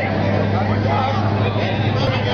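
A steady low vehicle engine hum under indistinct street voices and crowd chatter.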